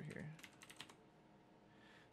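A quick run of faint keystrokes on a computer keyboard about half a second in, typing a short word.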